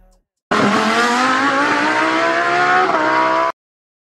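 A car engine revving, loud, its pitch climbing slowly for about three seconds before cutting off abruptly.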